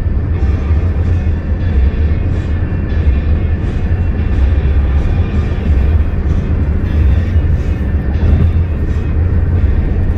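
Steady low rumble of car road noise heard from inside the cabin while driving at highway speed, with music playing in the background.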